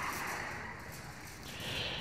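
Low, steady background noise of a supermarket entrance, an even hiss of room sound with no distinct event standing out.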